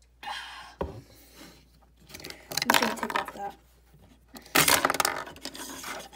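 Plastic LEGO minifigures and baseplate being handled by hand: clicks, rattling and scraping as a figure is pulled off the plate. There is a sharp click about a second in, and louder clatter about halfway through and again near the end.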